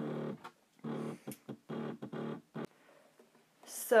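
A woman's voice speaking quietly and low in four short bursts of a word or two each, then a pause of about a second before louder speech resumes at the end.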